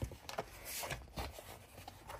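Handling of a stiff frosted-plastic six-ring binder: a few light clicks and brief rustles as its plastic cover and sleeves are opened and moved.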